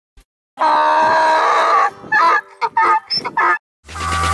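A donkey braying: one long drawn-out call, then a run of shorter hee-haw pulses.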